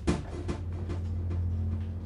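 Steady low music drone from the film score, with a door being pulled shut over it: a sharp knock just after the start and a second about half a second later.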